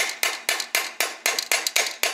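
Claw hammer striking a Yamaha Zuma's aluminium two-stroke engine crankcase in quick, even blows, about five to six a second, with a metallic ring. The blows are knocking the case halves apart.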